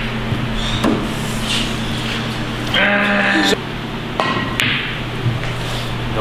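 Pool balls rolling on the felt of a pool table after a shot, with a sharp click of a ball striking about a second in and a few fainter knocks later. Near the middle a person lets out a loud drawn-out cry lasting under a second, the loudest sound here.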